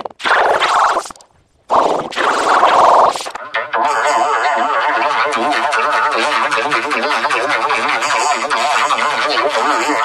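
Cartoon clip audio warped by heavy editing effects. Two short garbled vocal bursts are followed, from about three and a half seconds in, by a long dense warbling sound with a fast, regular wobble.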